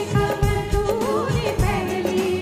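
Live band playing a Hindi film song: a sung melody of held, gliding notes over steady dholak drum beats.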